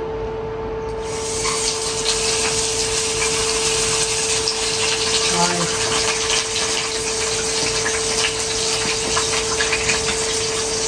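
Large pieces of fish going into hot cooking oil in a frying pan: a sizzle full of crackling spatter starts about a second in and carries on steadily. The fish is still wet and unsalted, so the oil spits.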